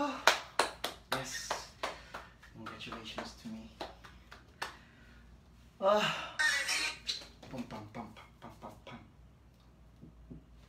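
Music cuts off at the start. A man then runs through dance moves with scattered hand claps, snaps and knocks, and short bursts of his own voice under his breath, the loudest about six seconds in, before it dies down to quiet room tone.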